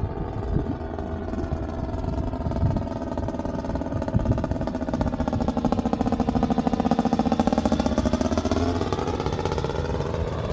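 Paramotor engine and propeller droning as the powered paraglider flies past close overhead. It grows louder to a peak a little past the middle, and its pitch dips and then rises again as it goes by.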